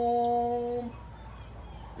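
A man's voice singing one long, steady 'bum' note that stops about a second in, followed by a quiet background.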